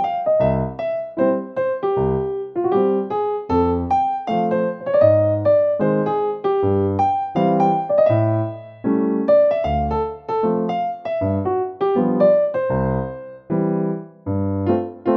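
Background piano music: a melody of short notes over low bass notes.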